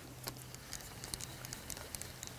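Faint, irregular light clicks and ticks as a fishing rod and reel are handled, over a low steady hum.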